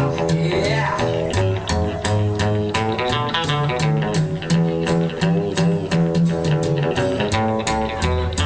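Live rockabilly band's instrumental passage between verses: upright bass, acoustic archtop guitar and electric guitar playing together over a steady clicking beat.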